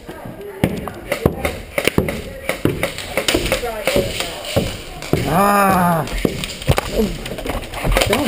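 Footsteps thudding up wooden stairs, a sharp knock about every half second, then a man's drawn-out shout, rising and falling, about five seconds in.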